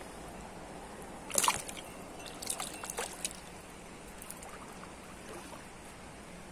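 A small river fish released back into a shallow stream: one splash about a second and a half in, then a few smaller splashes and drips, over the steady running of the stream.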